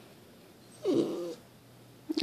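A schnauzer giving one short whining cry about a second in, falling in pitch: a sign of her distress at her owner leaving.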